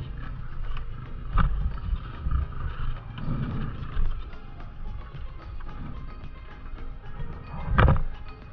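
Dirt bike rolling down a steep, rough dirt trail: a continuous low rumble with knocks over the bumps, one about a second and a half in and a louder one near the end.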